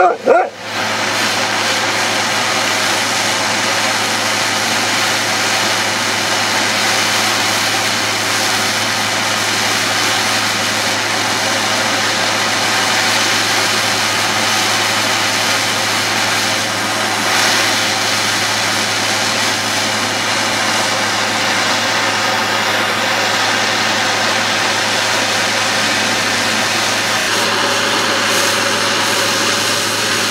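Handheld propane torch burning with a steady, loud hiss as its flame heats the neck of a glass bottle to soften it. There is a brief break at the very start, then an unbroken flame noise.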